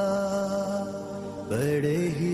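A naat singer's voice holds one long, steady sung note without instruments, then slides up into the next note about a second and a half in.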